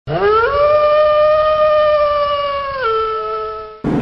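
A single long howl that rises in pitch over the first half second, holds steady, then steps down lower near the end. A second, higher voice joins briefly before it cuts off.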